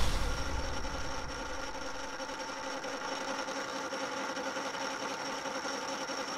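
A steady machine-like hum with several steady tones. A loud low hit at the very start dies away over about a second.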